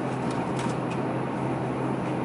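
Steady low hum and hiss of a supermarket's background noise, with a couple of faint light ticks.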